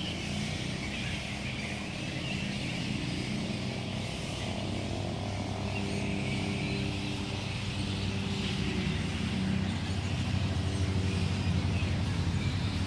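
A vehicle engine running steadily, growing a little louder over the last few seconds.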